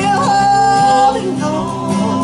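Live gospel song: singing over strummed acoustic guitars. A singer holds one long steady note through the first half, then the melody moves on.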